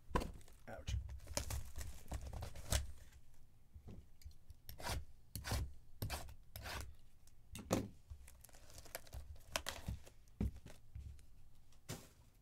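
Cellophane shrink-wrap being torn and crinkled off a sealed trading-card hobby box: an irregular run of sharp rips and crackles.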